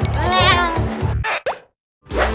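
A drawn-out, wavering spoken goodbye over light background music, followed by a short rising edited sound effect about one and a half seconds in. The sound then cuts out completely for about half a second.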